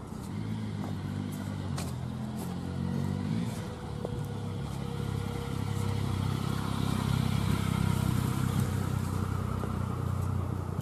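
Motor vehicle engines running and passing along the street: one in the first few seconds, then a louder low engine hum building through the second half.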